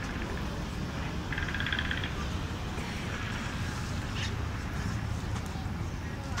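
Outdoor city ambience at a busy lookout: a steady low rumble with faint voices of people nearby, and a brief high chattering sound about a second and a half in.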